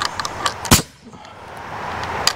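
Nail gun firing into wooden roof framing: one sharp shot about three quarters of a second in, with a whirring hiss before and after it.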